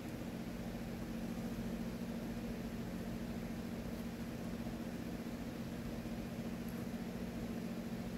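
Steady low hum with a soft, even hiss: the room's background noise, with no chewing or chopstick sounds standing out.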